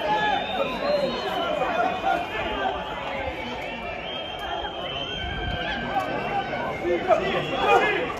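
Indistinct overlapping shouts and chatter from players and a few spectators at an outdoor football match, with no clear words, growing louder near the end.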